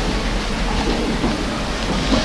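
A congregation sitting down after standing for prayer: a steady rustling, shuffling noise of people and seats settling in a large room.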